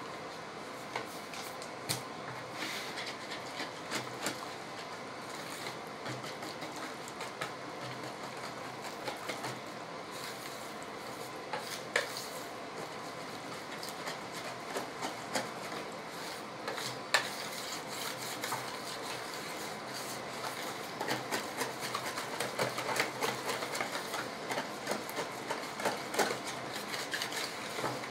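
Flour pouring from a paper bag into a plastic bowl, then a hand mixing and kneading soft yeast dough in the bowl. Scattered knocks and scrapes against the plastic, busier in the last few seconds.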